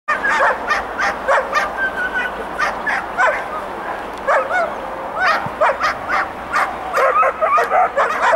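Dogs yelping and whining with many short, high-pitched cries, some with a sharp onset like a yip. The cries thin out about halfway through and come thick and overlapping again near the end.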